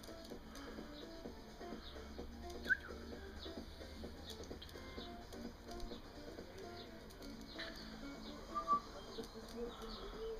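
Small birds chirping with many short high notes, with two louder single calls, one about a quarter of the way in and one near the end.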